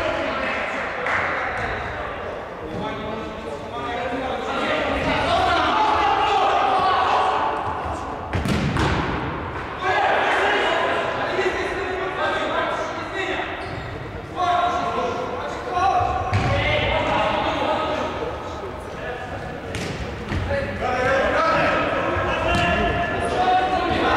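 A futsal ball being kicked and bouncing on a wooden sports-hall floor, a sharp knock every few seconds, over voices calling out that echo around the large hall.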